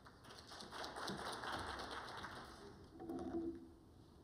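Brief, scattered light applause from an audience in a hall, many small claps that rise and fade, followed about three seconds in by a short low-pitched sound.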